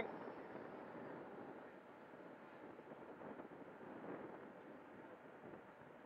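Faint, steady rushing of an FMS 80mm Futura's electric ducted fan throttled back for landing, slowly fading.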